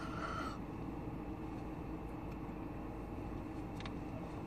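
A loud, breathy rush of air through a wide-open mouth, a sharp breath taken during a hold-your-breath challenge, cutting off about half a second in. It is followed by a steady low hum and rumble inside a car cabin.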